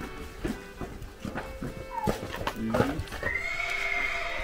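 Horses' hooves clopping on concrete as they are led out, then a horse whinnying in one long high call near the end.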